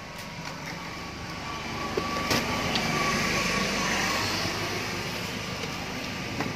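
A passing motor vehicle: broad engine and road noise swells to a peak about halfway, then fades. A few sharp knocks from the cardboard TV box being handled come through on top.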